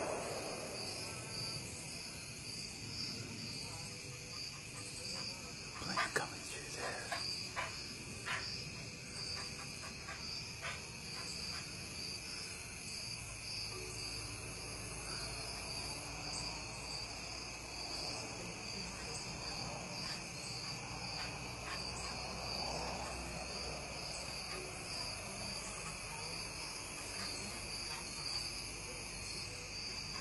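Steady outdoor insect chorus, like crickets, with a high trill pulsing a few times a second and a few faint knocks about six to eight seconds in.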